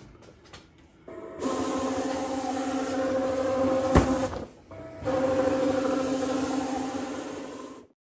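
USCutter Titan vinyl plotter's feed motor running with a steady, buzzing whine as it drives the vinyl through its rollers. It runs for about three seconds with a sharp click near the end, stops briefly, then runs again for about three more seconds before cutting off.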